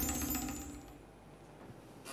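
The last notes of a TV show's opening theme music ring out and fade away over about a second, leaving near silence.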